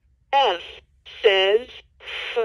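Recorded voice of a LeapFrog Think & Go Phonics toy playing through its small built-in speaker: two short spoken phrases, a letter and the sound it makes, triggered by pressing its letter buttons.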